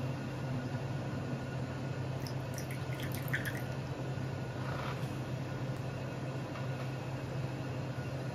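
Tea poured from a small ceramic vessel into a cup, with a few light ceramic clinks in the middle, over a steady low hum.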